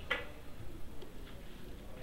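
A pause in speech: quiet room tone with one short click just at the start and a few fainter, irregular ticks.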